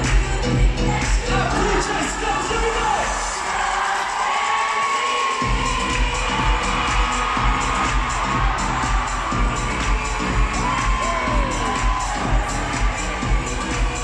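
Loud dance music with a pounding bass beat played over an arena PA, with a large crowd cheering over it. The bass beat cuts out about four seconds in and comes back a second and a half later.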